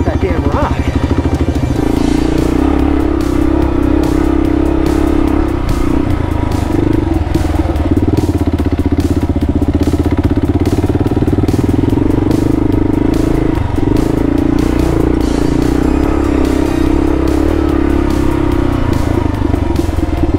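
Kawasaki KLR650's single-cylinder four-stroke engine running steadily while riding along a rough dirt road, with frequent short clicks and clatter over it.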